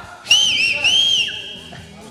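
A loud, high whistle. It starts suddenly, wavers up and down in pitch, then rises and holds for about a second before fading. A second, lower note slides downward partway through.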